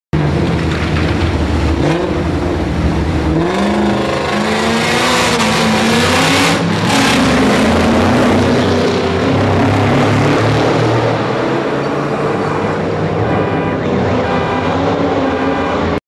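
A car engine revving hard under acceleration, its pitch rising over the first few seconds and then running on at high revs. A short rush of noise comes about six and a half seconds in.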